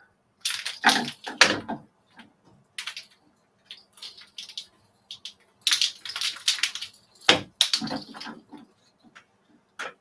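Tama bobbins and threads being moved across a takadai braiding stand during a thread exchange, knocking and clattering in irregular clusters: a run of clacks in the first two seconds and another about six to eight seconds in.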